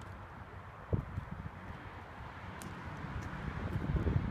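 Wind buffeting the microphone over a low outdoor rumble, with one soft thump about a second in.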